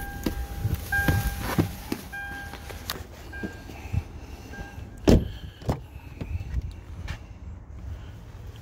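A car's electronic warning chime repeating several times, then two sharp clunks of a car door being handled about five seconds in.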